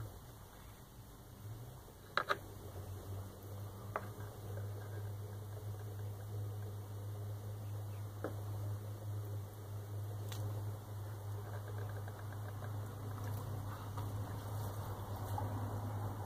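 Electric pottery wheel motor running with a steady low hum that starts about two seconds in, with a few light clicks scattered through.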